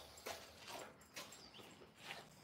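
Faint, short, irregular noises from an Alaskan malamute puppy moving about on a concrete floor, about four in two seconds.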